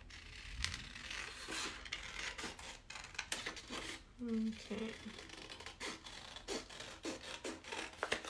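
Patterned paper being handled on a craft desk: soft, irregular rustles, scrapes and light taps as the sheet is slid and set down. A short hummed voice sound a little after four seconds in.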